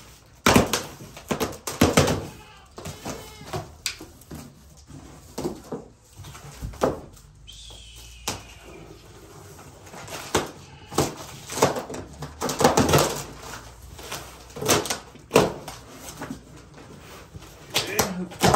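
Knife slicing through packing tape and corrugated cardboard on a large shipping box, then the flaps being pulled open. The sound is an irregular run of scrapes, rips and cardboard knocks.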